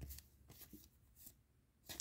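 Near silence, with a few faint soft clicks of trading cards being slid through the hand.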